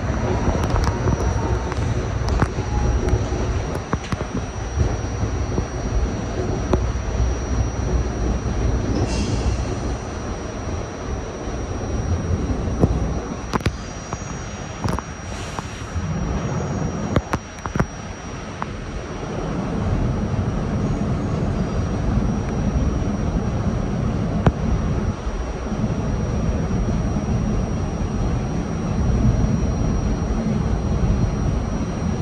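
R68-series New York subway car running along the track, heard from inside the front of the train: a continuous rumble of wheels on rail, with a few sharp clicks over joints about halfway and a thin steady high tone.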